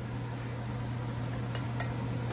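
Potassium silicate solution in a stainless steel saucepan on an electric cooktop, simmering as it is boiled down to concentrate it: a steady low hum under a faint hiss. Near the end come two light clinks of a glass stirring rod against the pan.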